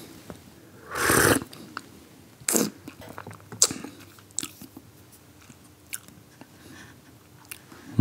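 A person slurping hot tea from a small cup to taste it: one loud slurp about a second in, then two shorter slurps and faint mouth sounds and small clicks.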